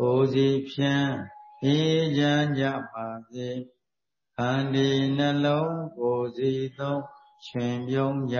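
A Buddhist monk's chanting: one low male voice in long, held phrases that glide slowly in pitch, with a short pause about four seconds in.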